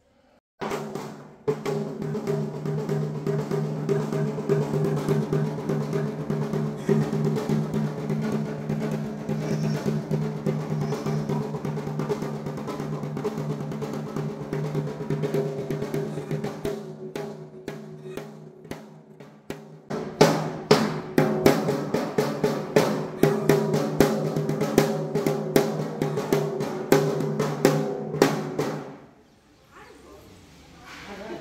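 Double-headed barrel drum beaten in fast, continuous strokes over a steady droning tone, the drumming growing denser and louder about two-thirds of the way through, then stopping suddenly just before the end.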